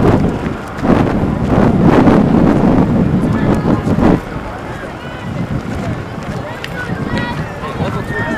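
Wind buffeting the microphone, loud for about the first four seconds and then dropping away, leaving a crowd of spectators talking and calling out.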